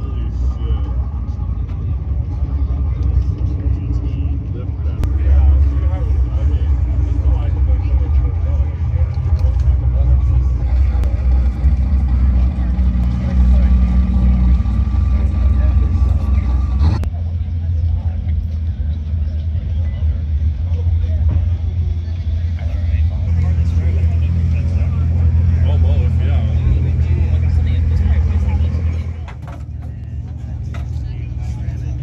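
A car engine idling nearby: a steady low rumble that swells a little about five seconds in. Voices talk in the background, and there is a single sharp knock a little past halfway.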